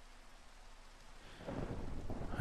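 Faint background ambience under the narration: a low rumbling noise, quiet at first and growing louder about halfway through.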